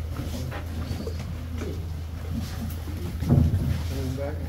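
A small tour boat's motor runs with a steady low drone as the boat moves slowly along the cave walls, with a brief louder low rumble a little past three seconds in.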